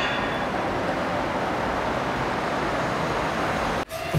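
Steady hum of city street traffic, even and unbroken, cutting off abruptly near the end.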